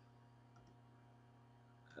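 Near silence: a steady low hum with a faint computer-mouse click or two about halfway through.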